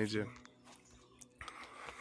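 A voice finishing a word, then a low background with a few faint clicks before speech resumes.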